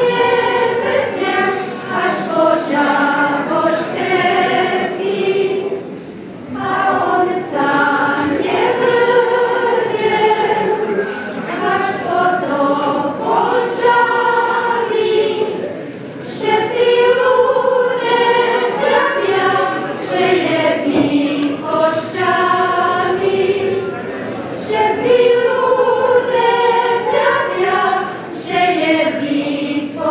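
A group of women singing a folk song together in long phrases, with short pauses for breath between them.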